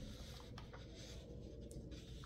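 Quiet room tone: a low steady hum with a few faint small ticks and rustles.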